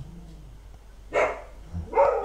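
A dog barking: one short bark about a second in, and another starting near the end.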